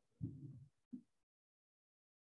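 Near silence: a faint low murmur lasting about half a second, a short blip near one second, then dead quiet.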